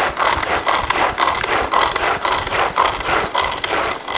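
Tupperware Extra Chef pull-cord chopper worked by hand: the cord is pulled out and snaps back in a quick rhythmic series, each pull a zipping whir as the blades spin through chunks of ripe mango, about two to three pulls a second.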